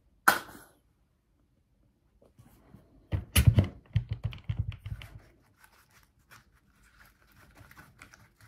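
A plastic squeeze bottle gives one sharp sputter just after the start as paint is squeezed into a plastic tub. About three seconds in comes a loud cluster of knocks and rattles, then faint clicks and taps of a brush working in the plastic tub.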